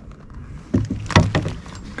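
A hooked ladyfish wriggling against a plastic kayak: a quick cluster of about five sharp knocks and taps, starting under a second in.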